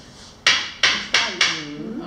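A crystal perfume bottle tapped four times in about a second, giving short, sharp clinks that show it is crystal and not plastic.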